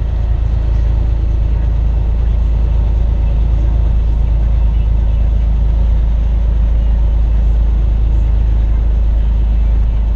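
Semi truck's diesel engine and tyres heard from inside the cab at highway speed: a steady, loud low drone that holds even throughout.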